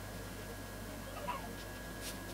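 Quiet background with a steady electrical hum, and one faint, short pitched squeak about a second in.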